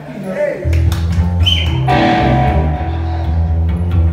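Live electric bass and electric guitar playing through amplifiers, coming in about half a second in with heavy bass notes and a few sharp strikes.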